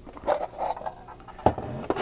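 A clear plastic display case coming off a diecast model's plinth: plastic rubbing and scraping, then a sharp click about a second and a half in and another just before the end.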